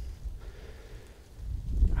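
A low, uneven rumble of wind buffeting the microphone, growing louder toward the end, with a soft breath.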